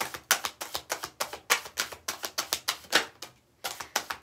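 A deck of tarot cards being shuffled by hand: a quick run of card flicks, about six a second, that stops briefly a little over three seconds in and then starts again more softly.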